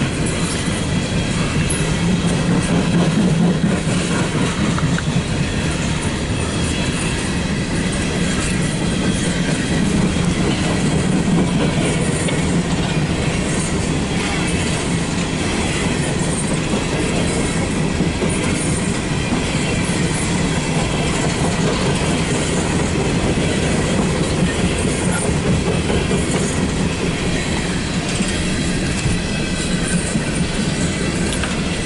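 Empty coal hopper cars of a long freight train rolling past, with a steady loud rumble and the clatter of wheels on the rails.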